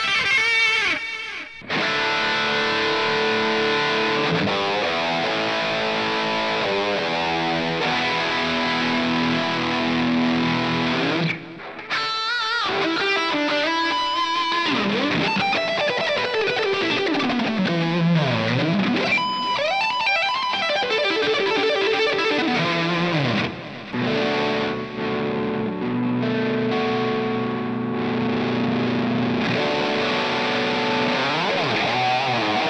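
Latitude Cardinal headless electric guitar with humbucker pickups, played through an amp with gain and delay: sustained lead notes and string bends, with short breaks between phrases. About halfway in, one note's pitch sweeps far down and back up, a tremolo-bar dive.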